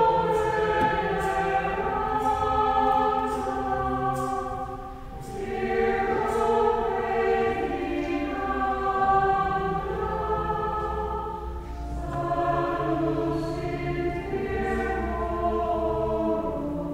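Choir singing in long held phrases, with brief breaths about five seconds in and again about twelve seconds in.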